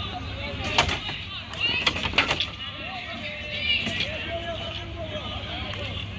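Sharp clacks from a box lacrosse game in play: one about a second in, then a quick cluster of several around two seconds in. Distant shouting voices run underneath.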